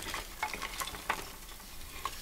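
Split kindling sticks being handled on a woodshed floor: a few light, irregular wooden clicks over a faint crackling hiss.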